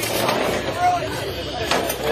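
Indistinct voices of several people talking, with one short sharp knock about three-quarters of the way through.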